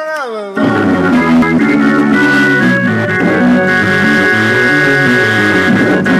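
Hammond-style electric organ played gospel-style: full sustained chords over a moving bass line. The chords come in about half a second in, after a short downward-sliding tone.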